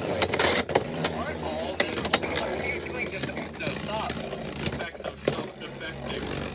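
Two Beyblade Burst spinning tops whirring in a plastic stadium, with scattered sharp clicks as they knock together and scrape the stadium floor and walls.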